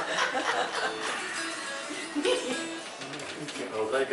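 Casual talk and chuckling among a group of musicians, mixed with a few stray notes from acoustic string instruments between tunes.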